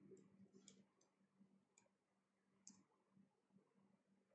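Near silence with a few faint, sharp clicks about a second apart from a computer being worked by hand.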